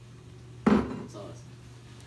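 A single short thump about two-thirds of a second in, dying away quickly, over low room hum.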